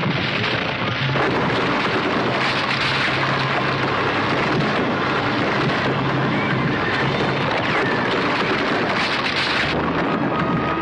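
Film sound effect of a rockslide: boulders tumbling down a canyon wall in a continuous, dense roar of falling rock. It starts about a second in and cuts off sharply just before the end.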